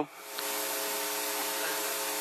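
Steady background hiss with a faint hum underneath, swelling up over the first half second and then holding level.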